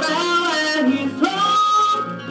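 A Southern gospel song playing: a singer over guitar accompaniment, holding one long note in the second half.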